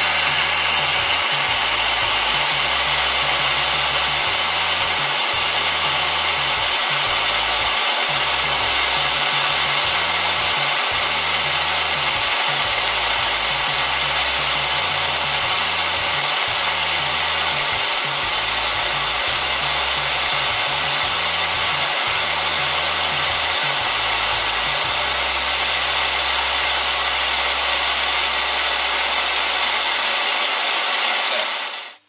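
Gas blowtorch flame hissing steadily, held against a sycamore bowl turning slowly on a wood lathe to scorch its rim.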